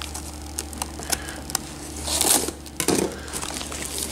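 Kitchen knife working at a plastic-wrapped cardboard box: scattered clicks and scrapes, then a short rasp of blade and crinkling plastic about two seconds in.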